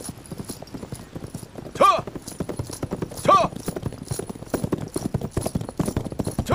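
Horse's hooves clattering in rapid hoofbeats on hard ground as it is ridden, with a short shout about two seconds in and another about three and a half seconds in.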